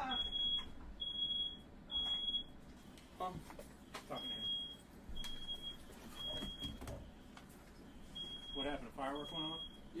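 Smoke alarm sounding its repeating pattern of three high beeps and a pause, heard three times over, set off by smoke from a firework lit indoors.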